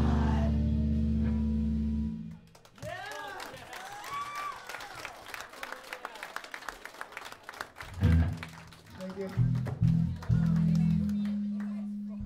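A band's loud final chord on electric guitar and bass rings out and cuts off about two seconds in. The crowd then shouts and claps for several seconds, and a guitar plucks a few low single notes, holding one near the end.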